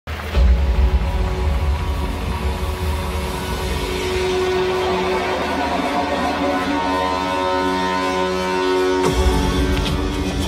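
Stadium intro music over the ballpark's loudspeakers: held synth chords over a heavy bass, which thins out in the middle and comes back hard about nine seconds in.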